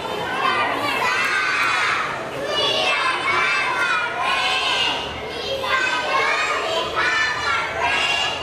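A group of young children singing loudly together in unison, in phrases of a second or two with short breaks between.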